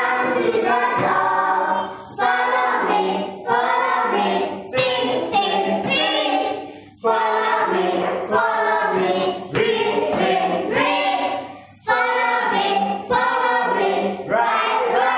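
Children's voices singing an English action song in chorus, in short phrases with brief breaks between them.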